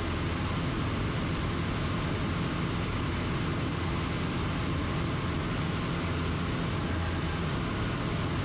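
American Champion Super Decathlon's four-cylinder Lycoming engine and propeller running steadily in cruise, with air rushing past, heard inside the cockpit.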